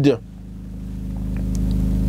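A low rumble swelling steadily louder, over a faint steady hum.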